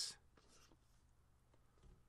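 Near silence with a faint scratch of a stylus drawing on a tablet screen, about half a second in.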